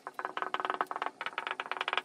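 Dry-erase marker squeaking on a whiteboard as it writes, a fast rattling chatter in three spells with short breaks between strokes.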